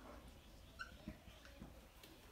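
Faint squeaks and light taps of a felt-tip marker writing on a whiteboard, a few short squeaks over near-silent room tone.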